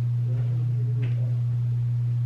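A loud, steady low hum: one sustained tone held without change. There is a faint tick about a second in.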